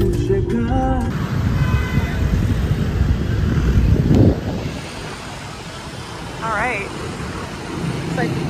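Outdoor traffic noise: a low rumble that swells to a loud peak about four seconds in and then drops away, followed by quieter street ambience with a brief wavering voice-like sound near the end.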